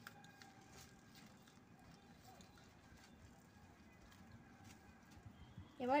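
A hand mixing a wet mustard paste in a bowl: faint, irregular soft clicks and patting.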